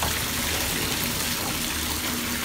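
Bathtub faucet running steadily, its stream splashing over a hand holding a bubble bar beneath it and down into a filling tub.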